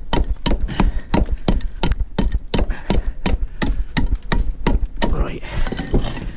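Brick hammer chipping the edge off a clinker concrete block with quick, even blows, about four a second. The blows stop about five seconds in and a brief rough, gritty noise follows.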